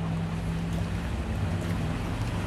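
Steady rushing background noise with a low, even hum underneath, holding at one level with no speech.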